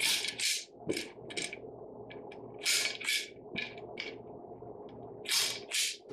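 Manual sawdust-spawn inoculation gun being tapped into a plastic tray of sawdust spawn and pressed into drilled holes in a log: short scratchy crunches in small clusters, a new cluster every two seconds or so. A faint steady hum runs beneath.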